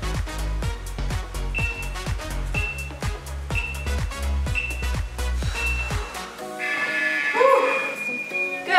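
Electronic dance music with a steady beat and deep bass. Short high beeps sound once a second through the middle as a workout interval timer counts down. The bass and beat stop about six seconds in, leaving a brighter held sound.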